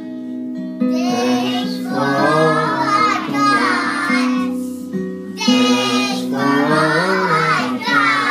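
Young children singing together in unison over a musical accompaniment, three sung phrases with short breaks between them.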